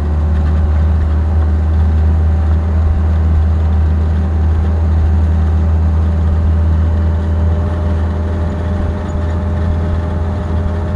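Steady low drone of a road vehicle's engine and tyre noise, heard from inside the cab while driving along.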